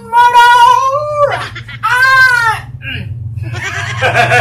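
A voice singing high, long-held notes. The first is held for about a second with a slight waver. The second, shorter one swells up and falls back in pitch.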